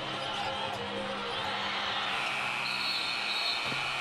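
Basketball arena crowd noise, a steady din of many voices that swells with higher held shouts from about one and a half seconds in.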